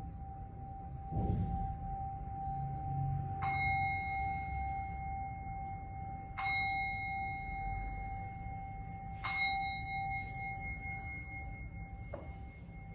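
A meditation bell or singing bowl struck three times about three seconds apart, each strike ringing on, over one steady ringing tone held throughout.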